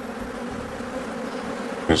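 A honeybee colony buzzing at its nest in a wall cavity, a steady, dense hum; the hive is suspected of being Africanized (killer) bees.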